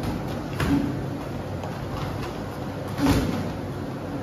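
Two dull thuds of boxing gloves landing in sparring, about two and a half seconds apart, over steady room noise.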